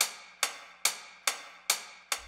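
Isolated hi-hat track from a song's multitrack stems playing alone: a steady pattern of single crisp hits, a little over two a second, each decaying quickly.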